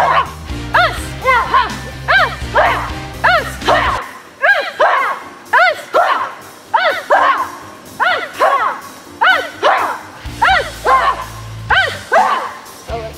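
Children shouting short kiai cries in a steady rhythm, about two a second, each cry rising and falling in pitch, as they punch through a karate drill. Sustained low tones run beneath the first few seconds and return near the end.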